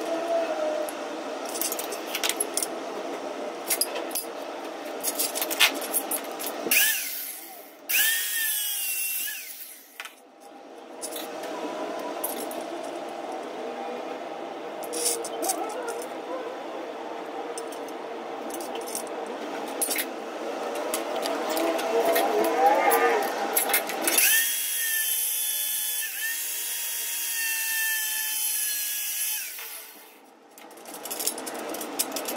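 Power drill running in two bursts, a steady motor whine over a high hiss: one of about three seconds a quarter of the way in, and a longer one over the last six seconds. Between the bursts there are softer sounds with a wavering pitch and scattered clicks.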